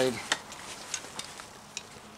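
A US military camouflage backpack being handled: fabric rustling, with a few light clicks scattered through it.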